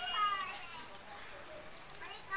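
High-pitched voices calling, loudest in the first half second and then fading into a quieter background.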